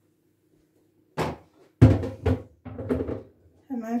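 A few knocks and thuds of kitchen dishes being handled and set down, the loudest about two seconds in, followed by lighter clatter.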